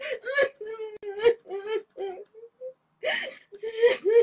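A woman crying hard: broken, high-pitched whimpering sobs, then two long, ragged breaths near the end.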